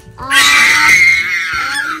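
A baby's loud, excited squeal, one long cry of about a second and a half.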